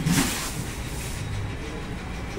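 A large decorative laminate door sheet being slid off a stack of sheets: one short swish of the sheet's face rubbing across the one below, then a steady low background rumble.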